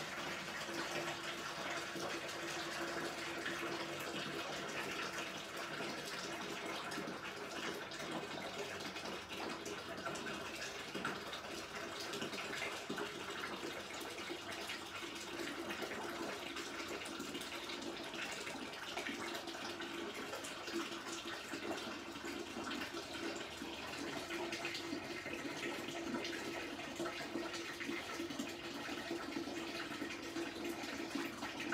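Wort draining from an orange drink-cooler mash tun as a steady running, pouring stream: the first runnings of an all-grain mash after starch conversion, before a batch sparge.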